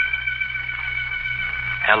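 A dramatic radio-drama music sting: a loud high chord strikes just before and is held steady, over a low steady hum.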